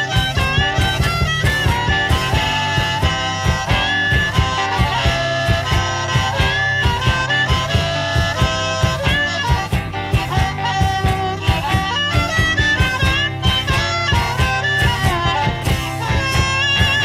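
Instrumental break of a blues song: harmonica playing bending, sliding phrases over a steady beat, with guitar underneath.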